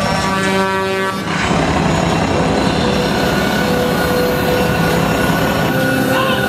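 Powerboat engine running with water rushing in its wake. A held horn-like chord cuts off about a second in.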